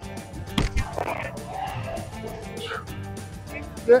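A golf club striking a ball off a turf hitting mat once, about half a second in, over background music.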